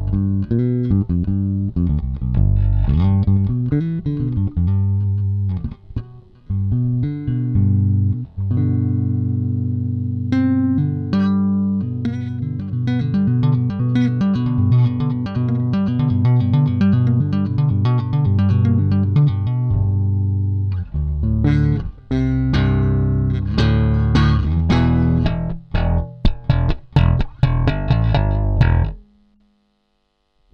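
Music Man StingRay four-string electric bass played fingerstyle, a continuous run of notes and riffs with its pickup switched to a single-coil setting, giving a little more hiss and bite. The playing stops shortly before the end.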